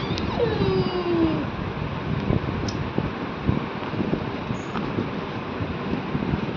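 Steady rushing background noise, like a fan or air on the microphone, with scattered light knocks. In the first second and a half a single voice-like tone glides downward.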